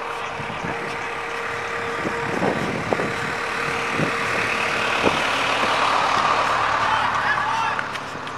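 A truck engine running close by, getting louder over the last few seconds and then dropping away near the end.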